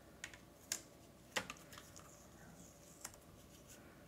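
A few faint, sharp clicks and ticks from hands handling a thin metal die on cardstock while peeling post-it tape off it. There are four separate clicks, and the loudest comes about a second and a half in.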